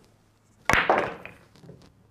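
Pool cue striking the cue ball once, a single sharp click, followed by the ball rolling across the table cloth and a few faint knocks near the end.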